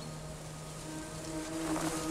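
Quiet film soundtrack: a low sustained music note over faint ambience, joined by a second, higher held note about a second in.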